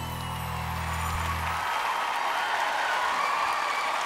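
The last held chord of a slow song rings out and stops a little under two seconds in, while a studio audience's applause and cheering build.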